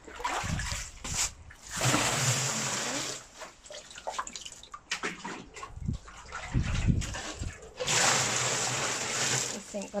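Water poured from a plastic caddy bin into a plastic bin, splashing in two pours of about a second and a half each, one near the start and one near the end, with low rumbles between them.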